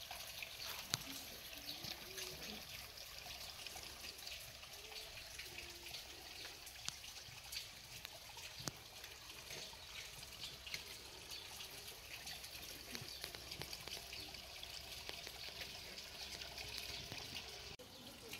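Faint steady trickle of running water, a soft hiss dotted with small ticks and splashes.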